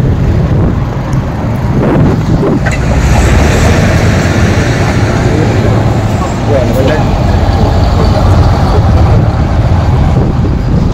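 Double-decker bus driving past close by over a steady low traffic rumble. Its engine and road noise swell about three seconds in and stay loud through the middle before easing off.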